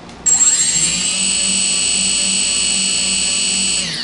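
Four brushless quadcopter motors without propellers spinning up together under a freshly calibrated EMAX 4-in-1 ESC: a whine that rises in pitch for about a second, then holds steady and high, and stops just before the end.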